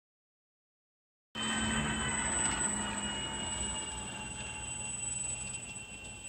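Silence for just over a second, then the steady high whine of a radio-controlled F7F Tigercat twin-engine scale model's motors running while it sits on the ground, easing slightly in level toward the end.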